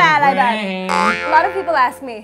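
A voice singing a long held, slightly wavering note from a pop song. About a second in, the sound changes suddenly to a noisier passage with shifting pitch.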